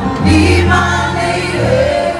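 Live reggae band playing over a PA with a deep bass line and several voices singing.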